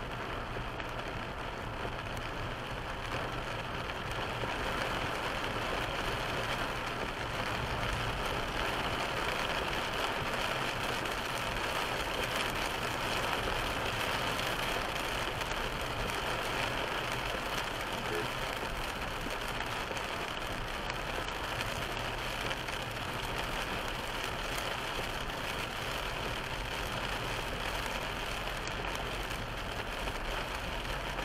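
A car driving slowly in heavy rain, heard from inside the cabin: a steady hiss of rain on the glass and body and tyres on the wet road, over a low engine hum.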